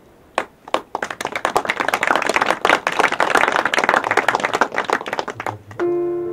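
Audience applauding: two single claps, then dense clapping for about four seconds that fades out as a digital piano begins playing near the end.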